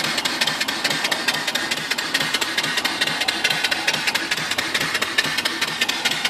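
Home-built single-cylinder steam engine (3-inch bore, 3-inch stroke) running steadily, belt-driving an alternator. It gives a rapid, even beat with a steady hiss of steam over it.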